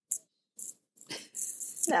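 A few short, quiet breathy hisses from a person between lines of talk, then a woman's voice starting to answer near the end.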